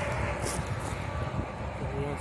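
Steady rumbling vehicle noise mixed with wind on the microphone, slowly fading.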